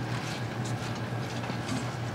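Chopped kale and onions sizzling in a non-stick frying pan while a silicone spatula stirs them, over a steady low hum.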